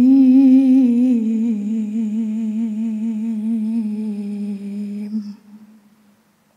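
Solo voice reciting the Quran in melodic tilawah style, drawing out one long melismatic note with steady vibrato. The pitch steps down slightly about a second in, and the note breaks off about five seconds in.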